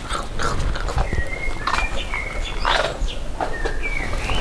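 A large dog giving short, thin, high-pitched whines in a row while begging for treats from a hand, with a short noisy sniff or snort a little before three seconds in.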